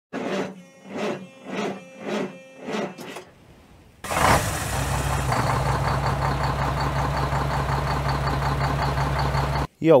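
Intro soundtrack: six evenly spaced pitched beats, then after a brief pause a steady engine-like drone that starts about four seconds in and cuts off suddenly just before the end.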